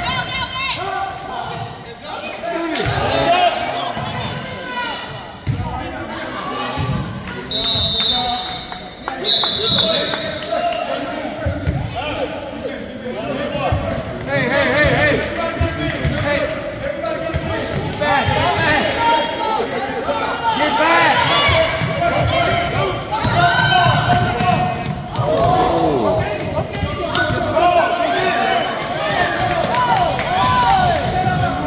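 A basketball dribbled on a hardwood gym floor, with voices shouting throughout and two short, high referee's whistle blasts about eight seconds in.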